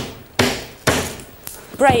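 Three sharp hammer blows about half a second apart on a piece of rubber tubing frozen brittle in liquid nitrogen, which cracks and shatters like glass instead of bouncing.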